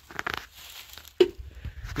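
Rustling and crunching handling noise, with a few small clicks near the start and one sharp knock a little past halfway.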